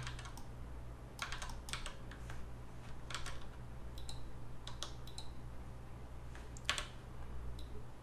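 Scattered computer keyboard key presses and mouse clicks, about a dozen, irregularly spaced, the loudest a little before the end, over a steady low hum.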